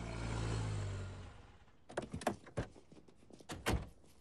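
Station wagon pulling into a driveway, its engine rumbling and dying away over the first second, then car doors opening and shutting: about six sharp knocks between two and four seconds in, the loudest near the end.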